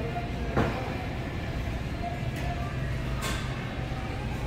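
Supermarket background noise: a steady low rumble, with a sharp knock about half a second in and a fainter click a little after three seconds.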